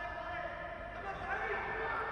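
Faint, distant voices calling out inside a large echoing sports hall during a futsal game, over the hall's low steady background hum.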